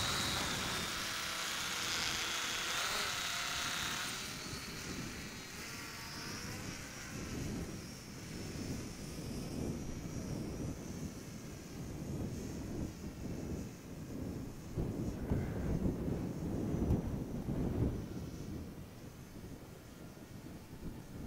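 Electric motor and propeller of a small foam RC F4U Corsair whining at high throttle close by for the first few seconds after launch. The whine then fades to a faint, thin high tone as the plane flies off, over gusty wind rumble on the microphone.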